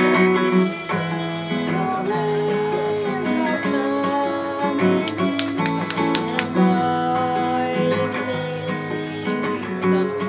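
Acoustic guitar played at a live open mic, with a woman singing over it.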